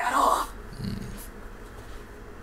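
A short muttered line of Japanese anime dialogue in the first half second, followed by a weaker low voice sound about a second in, then quiet background.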